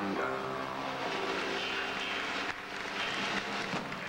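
Live band music with backing singers, filled with a dense noisy wash through the middle.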